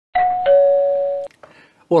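Two-note doorbell-style chime: a higher note, then a lower note about a third of a second later, both ringing on together for about a second before cutting off abruptly.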